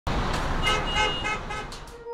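Road traffic noise with a car horn honking in a series of short beeps, about three a second. The noise fades out near the end.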